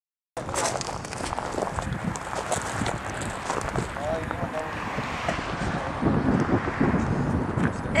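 Wind buffeting a camcorder microphone outdoors, a steady rumbling noise that cuts in abruptly just after the start, with faint voices talking in the background.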